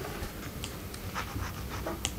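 Quiet room tone with a low steady hum and a few faint short rustles and clicks.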